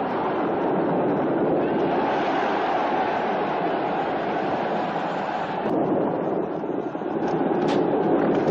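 Chariot-race soundtrack: galloping horses' hooves and chariot wheels in a dense, steady rumble, with a single sharp crack near the end.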